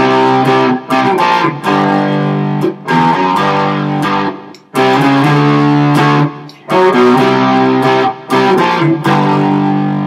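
Gibson ES-Les Paul hollow-body electric guitar strumming chords through an Orange TH30 valve amp's clean channel, pushed by an Ibanez Tube Screamer overdrive pedal. The chords come with short stops between them, in a phrase that repeats about halfway through.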